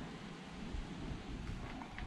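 Faint steady background noise, a low rumble with a light hiss, and no distinct sound event.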